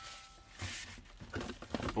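Faint rustling of tissue paper with a few light handling knocks as a bottle is lifted out of a cardboard box.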